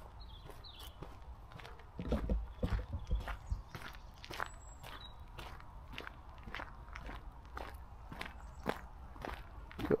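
Footsteps crunching along a gravel track at a steady walking pace, about two steps a second. A brief low rumble about two seconds in.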